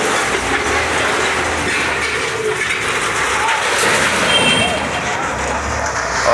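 Heavy demolition machinery running at work: a wheel loader's engine is driven hard as its bucket pushes into a building, in a steady loud din with people's voices mixed in.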